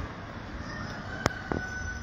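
Town street background noise, with a faint steady high tone coming in a little before halfway and two sharp clicks in the second half.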